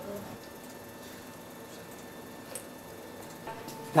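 Quiet room tone with a faint steady hum and a couple of faint clicks.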